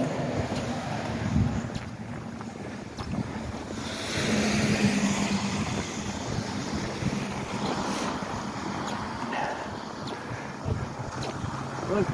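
Traffic on a slushy street with wind on the microphone: a car passes about four seconds in, its engine and tyre noise louder for a few seconds before fading back.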